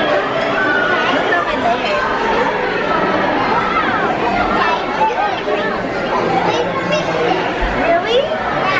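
Chatter in a busy restaurant dining room: many overlapping voices, adults and children, with no single voice clear.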